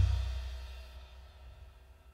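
Cymbals and a low note ringing out after a metal band's final hit, fading away over about a second and a half.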